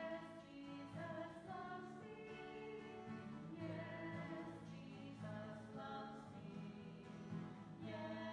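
A children's song sung over a strummed acoustic guitar, the sung melody moving note by note. It is recorded on a failing cellphone microphone.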